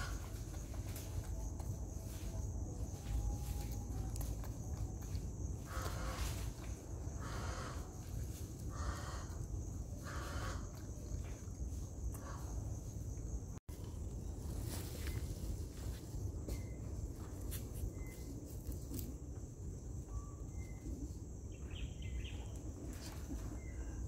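Woodland ambience with a steady high insect drone. Near the middle come four rustling crunches of dry leaf litter about a second and a half apart, and a few short bird chirps follow in the second half.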